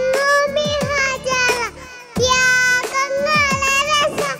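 A young girl singing a Mappila song into a headset microphone, holding long notes that bend in pitch, with a short break for breath about two seconds in.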